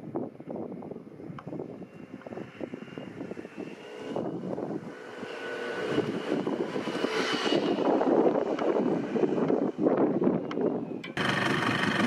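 Peugeot Tweet 50 scooter's small engine running as it is ridden along the road, faint at first and growing louder from about the middle as it comes closer.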